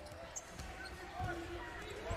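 Basketball being dribbled on a hardwood court: a series of low bounce thumps heard faintly through the arena noise.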